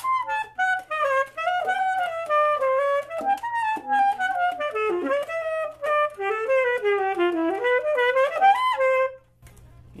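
Saxophone playing a quick single-line jazz lick that climbs near the end into a high altissimo note, then settles on a held lower note and stops.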